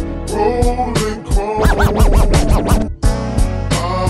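Slowed, chopped-and-screwed hip hop beat with drum hits and heavy bass. In the middle, a run of quick up-and-down pitch sweeps plays over the beat, then the sound cuts out for an instant and the beat comes back in.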